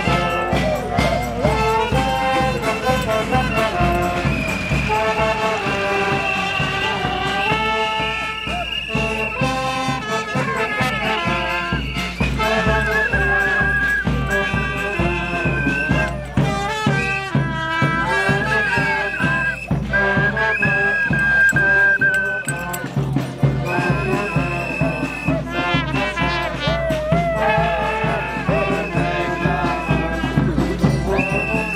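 A street brass band of trumpets, trombone and saxophone playing a tune over a steady bass-drum beat.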